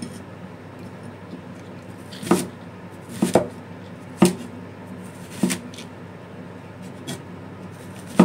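Cleaver chopping eggplant into cubes on a round wooden chopping board: about six sharp knocks of the blade through the flesh onto the wood. They are unevenly spaced, with a quick double knock about three seconds in.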